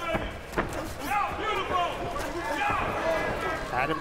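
Sharp thuds of kickboxing strikes landing during an exchange and clinch, two of them close together near the start, with voices carrying over them throughout.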